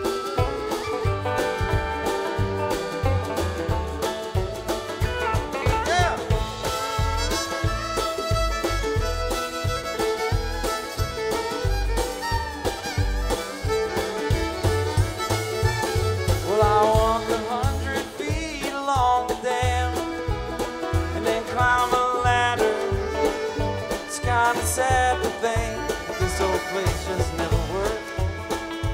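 Live bluegrass-style string band playing an instrumental break, with fiddle, banjo, upright bass and drums over a steady beat.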